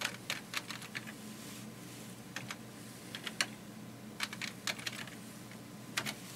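Computer keyboard keys being typed, short sharp clicks in small runs of a few keystrokes with pauses between them.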